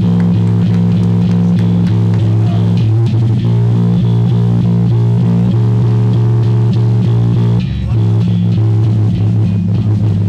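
A live punk band playing: loud distorted electric guitar chords over a drum kit with cymbal crashes, the chords changing every second or so. There is a brief break about three-quarters of the way in before the band comes back in.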